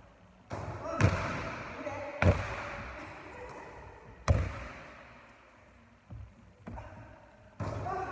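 A basketball hitting the hoop and bouncing on a hardwood gym floor: three loud bangs in the first half, each ringing out in a long echo through the large hall, then lighter knocks near the end.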